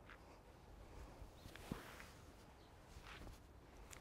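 Near silence: faint outdoor background with one soft, short tap about one and a half seconds in.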